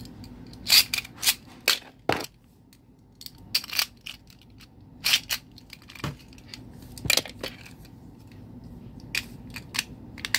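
Beyblade Burst spinning tops battling in a plastic stadium: irregular sharp clacks as the tops hit each other and the stadium wall, several in quick succession about a second in and more spaced out after, over a faint low steady whir.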